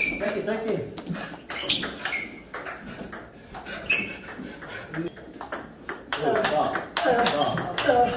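Table tennis balls clicking off bats, table and floor in irregular sharp ticks, with a man's voice in the last couple of seconds.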